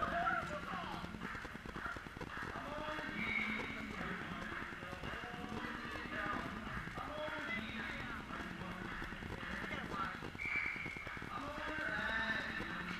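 Indistinct voices talking in an ice hockey rink, echoing, with scattered light knocks and taps underneath.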